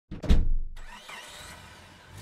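Logo-intro sound effect: a loud hit in the first half-second, then a fading tail with a brief rising whine.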